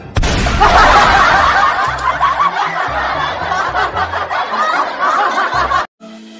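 A sudden bang, then a laughing sound effect over music with a bass line, cutting off abruptly near the end.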